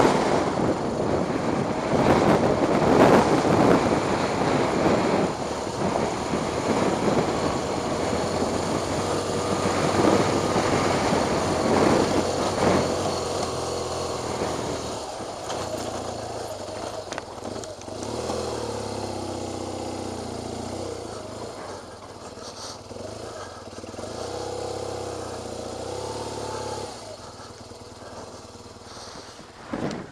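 Dual-sport motorcycle riding up a rough dirt track, its engine running under loud rushing noise that surges over the first half. Later the engine settles to a steady note for about ten seconds before it fades near the end.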